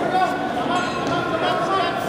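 Crowd chatter: several people talking and calling out at once, their voices overlapping with no single clear speaker.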